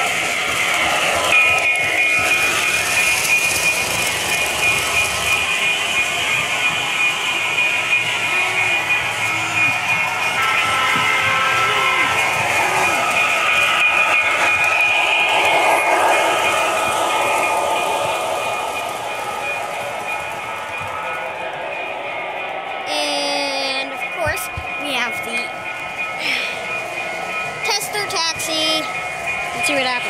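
Model train running on three-rail tubular metal track, with a steady high whine over a busy rolling clatter.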